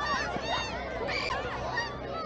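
Many children's voices shouting and squealing over one another in short, high-pitched calls, with crowd chatter underneath.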